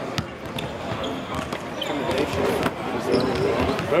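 Basketballs bouncing on a hardwood court: a scatter of irregular thuds with some echo, and a voice over them in the second half.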